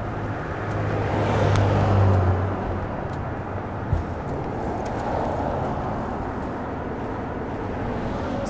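Outdoor city ambience: steady traffic noise, swelling louder with a passing vehicle from about one to two and a half seconds in. There is a single brief knock near the middle.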